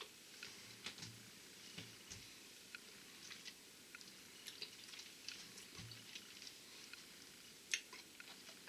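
Faint wet mouth sounds of someone tasting a spoonful of sauce: scattered small lip smacks and tongue clicks, with a slightly louder click near the end.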